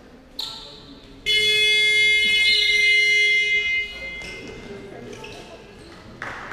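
Basketball hall buzzer sounding: a short blip about half a second in, then one loud, steady blast of about two and a half seconds that cuts off.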